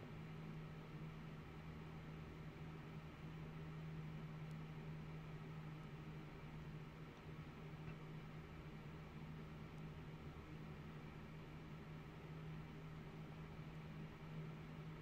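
Faint room tone: a steady low hum with an even hiss underneath.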